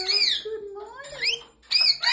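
Rainbow lorikeet giving a few short, high chirping calls that rise and fall in pitch, in quick groups.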